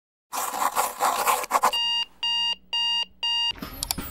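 A burst of rough hiss for about a second and a half, then four evenly spaced electronic beeps, about two a second, in the manner of a digital alarm clock.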